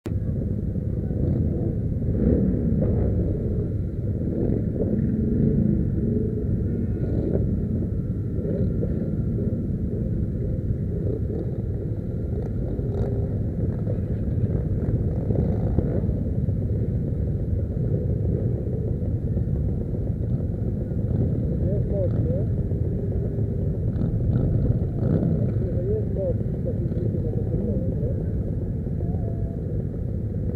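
Steady low rumble of motorcycle engines running among a large gathering of bikes, with people's voices in the background.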